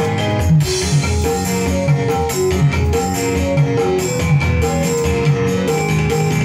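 Instrumental break of a dangdut song played live by a single-keyboard orgen tunggal band: a plucked, guitar-like melody over a steady bass and drum beat, with no singing.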